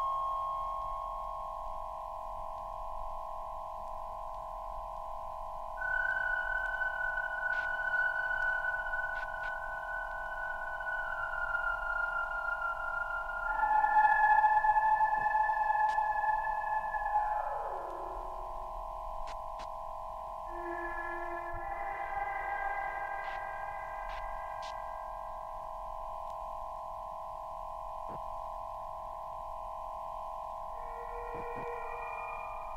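1960s electronic tape music: a steady cluster of held electronic tones drones underneath while single higher pure tones enter and hold. About halfway through, one tone slides steeply down in pitch, and the loudest stretch comes just before that slide.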